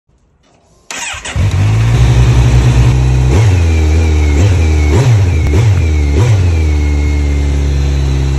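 A motorcycle with an Akrapovic carbon slip-on exhaust starting up about a second in, then idling, with several quick blips of the throttle in the middle.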